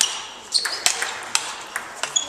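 Table tennis ball struck back and forth in a rally, about five sharp clicks off bats and table, roughly a third to half a second apart, some with a short high ping.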